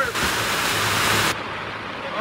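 Heavy rain pouring onto a plastic tarp overhead, a loud even hiss that drops suddenly to a duller hiss about one and a half seconds in.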